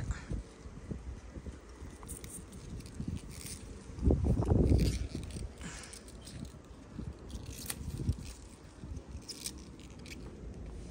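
Pea pods being picked by hand from the vines: rustling leaves with small snaps and clicks, and one louder low thud of handling noise about four seconds in.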